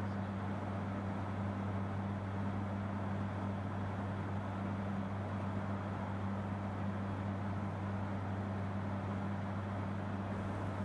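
Steady aircraft cockpit drone in cruise: a low, even hum with a broad rushing noise over it, unchanging throughout.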